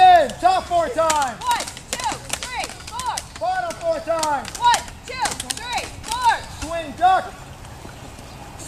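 Children sparring with toy lightsabers: a stream of short, high-pitched rising-and-falling cries, a few a second, over sharp clacks of plastic blades striking.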